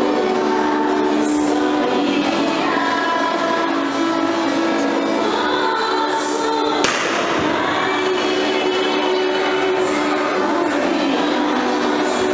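Religious song sung by a choir of voices, a slow melody of long held notes. A single sharp click about seven seconds in.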